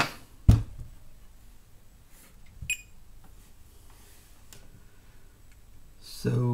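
A handheld digital multimeter set down on a workbench with one sharp knock about half a second in, followed near the middle by a short, high electronic beep. A few faint clicks of test leads being handled follow in a quiet room.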